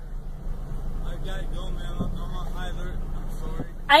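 A car engine running, heard from inside the cabin as a low steady hum, with a faint voice from outside the car over it.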